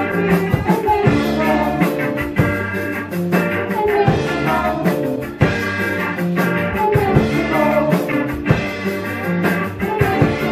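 Live band playing an upbeat song: electric guitar, drum kit and keyboard over a steady drumbeat.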